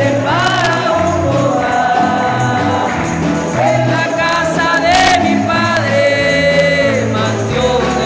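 A congregation sings an upbeat gospel hymn together over instrumental accompaniment with a stepping bass line. Hand clapping and jingling percussion keep the beat.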